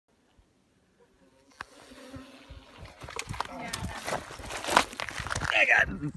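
Honeybees buzzing around an exposed wild comb, a faint hum that grows louder from about a second and a half in, with a few knocks from handling.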